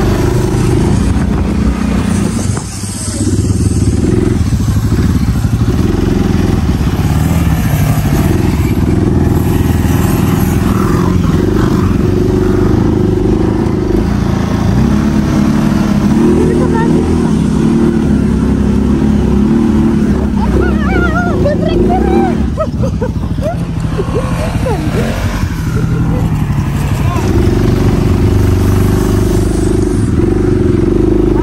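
Quad bike (ATV) engine running as it is ridden slowly over rough grass, its note shifting up and down with the throttle.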